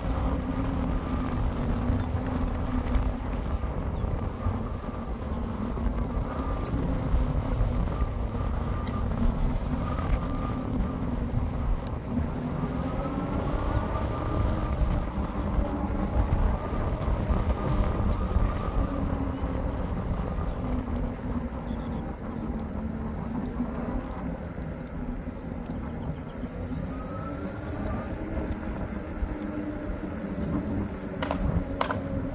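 E-bike riding on pavement: heavy wind rumble on the microphone, with a steady hum from the bike's motor and tyres that wavers slightly in pitch.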